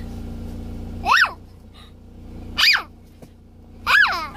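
A young boy's short, high-pitched squeals, three of them about a second and a half apart, each rising then falling in pitch. A low car-cabin hum runs underneath.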